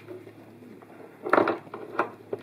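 A boxy electronics control box being turned around on a workbench by hand: a quiet stretch with a faint hum, then a short clunk and scrape past the middle and another brief knock near the end.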